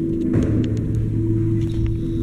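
Recorded music accompanying a ballet variation, with held low notes and a few faint light taps over it.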